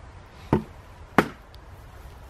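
Two sharp knocks of wooden beehive parts being handled, about two-thirds of a second apart, the second the louder.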